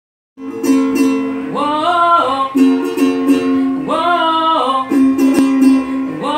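Acoustic guitar strummed steadily while a young man sings, starting about half a second in; two sung phrases rise and fall over the chords.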